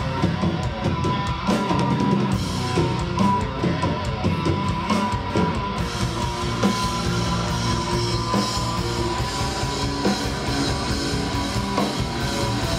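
Live rock band playing loud: electric guitars over a Yamaha drum kit, with no break in the music.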